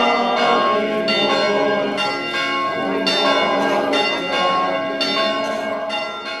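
Several church bells ringing together, struck again and again so that their tones overlap.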